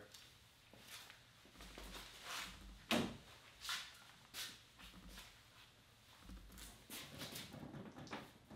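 Footsteps and scattered light knocks and scuffs as a canoe is picked up and handled, with one sharp knock about three seconds in.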